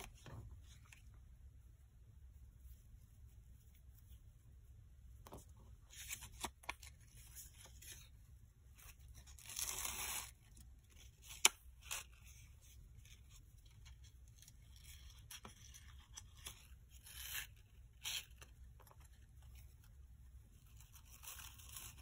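Sheer ribbon being pulled and gathered through slits in a cardstock card, with soft intermittent rustling and scraping. A longer rasping pull comes about ten seconds in, and a single sharp tick follows just after.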